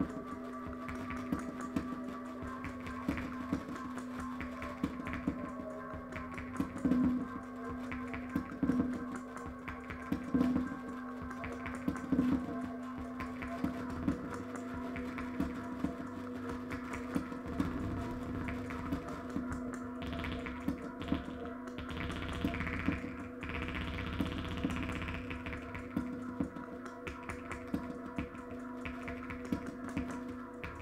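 Experimental electronic noise music on vintage synthesizers: a steady drone of several held tones under a dense clatter of clicks, with louder pulses roughly every second and three quarters in the first half. A hissing noise swell rises and falls in the latter part.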